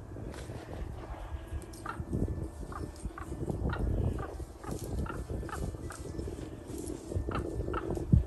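Common ravens calling, a string of short repeated calls about every half second from about two seconds in, as they mob a great horned owl. Low wind rumble on the microphone underneath.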